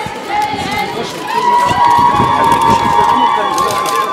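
A dense crowd talking and calling out, with several long, high held tones over it that grow louder about halfway through.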